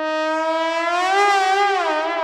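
Trombones playing loud, sustained tones that slide in pitch in a siren-like glissando. One tone rises about halfway through while a second line bends down and back up against it.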